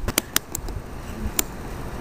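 A handful of sharp clicks, four close together at the start and one more later, over a low steady background rumble.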